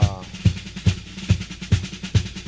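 Drum-led opening of a Club América football fan anthem: a steady beat of bass-drum hits a little over twice a second, with snare and percussion hits between them.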